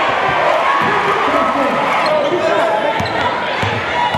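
Crowd noise and shouting voices fill a packed gymnasium, with a basketball bouncing on the hardwood court; a couple of sharp bounces stand out near the end.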